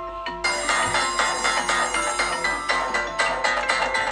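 Smartphone ringtones ringing over each other for incoming calls: a soft melodic ringtone is joined about half a second in by a louder, busier one of quick repeated notes.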